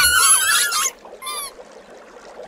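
Green rubber dolphin squeeze toys squeaking as a car tyre rolls over and crushes them: a burst of wavering, goose-like squeals for about the first second, then one shorter squeak.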